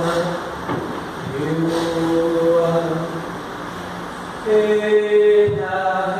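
A man's voice chanting a Toré song on wordless syllables in long held notes, the loudest held note coming near the end.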